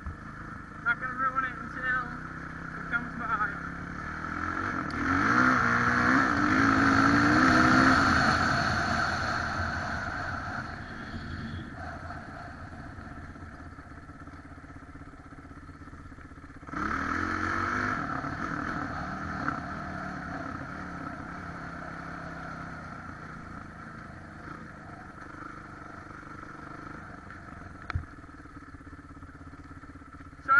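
Kawasaki 450 dirt bike's single-cylinder four-stroke engine riding across a field. It revs up between about four and eight seconds in, then eases off. The revs jump suddenly at about seventeen seconds and then slowly fall away.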